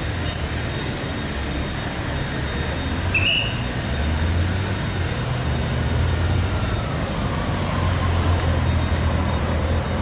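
Road traffic as police cars and motorcycle outriders drive past: a steady low engine hum over road noise that swells twice, with a brief high chirp about three seconds in. No siren wail is heard.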